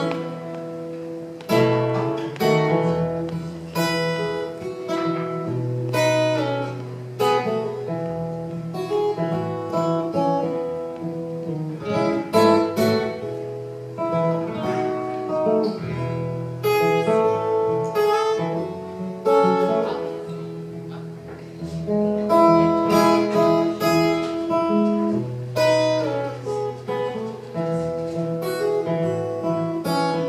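Steel-string acoustic guitar played solo, a run of picked and strummed chords, each struck sharply and left to ring. There are no vocals yet.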